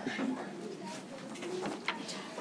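Faint, low murmur of voices in a meeting room, with one sharp click near the end.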